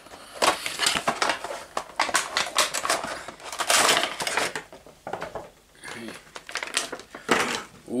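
Cardboard Funko Pop box being opened and its clear plastic insert crackling and rustling as the vinyl figure is pulled out: a rapid, irregular run of crinkles and scrapes.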